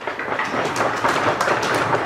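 Audience applauding: a dense patter of many hands clapping, starting suddenly after the speaker's closing thanks.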